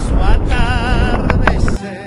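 Music with a man singing long, wavering notes over a low rumble. A few sharp clicks come near the end, and then the sound drops off suddenly.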